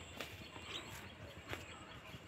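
Faint footsteps, three soft steps about half a second to a second apart, over a quiet outdoor background.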